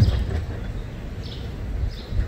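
Outdoor courtyard ambience: a steady low rumble with a few faint bird chirps, opening with a short low thump.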